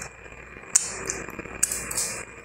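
Eating mouth sounds: a few short smacks and sucks as food is licked off the fingers.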